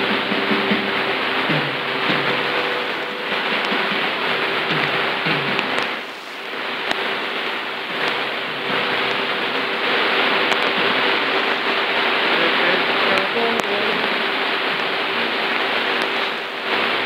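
Panda 6208 world-band receiver's speaker playing Radio Habana Cuba on 6000 kHz shortwave: heavy static and hiss with a steady low whistle tone, faint music under the noise. The signal fades briefly about six seconds in.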